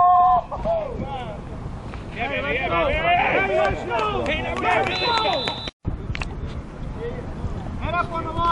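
Men yelling and cheering on the sideline of a flag football game, overlapping shouts with a long held yell at the start. About five seconds in there is a short high steady tone, and just before six seconds the sound cuts off abruptly at an edit.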